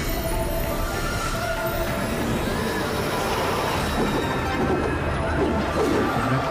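Fight-scene soundtrack music from an animated series, with crashes and sword-clash effects mixed in.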